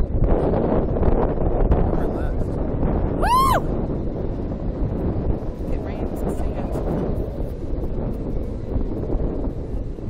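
Wind buffeting the onboard camera microphone of a Slingshot catapult ride as the rider capsule moves through the air, a steady low rumble. About three seconds in, a rider lets out a short whoop that rises and falls in pitch.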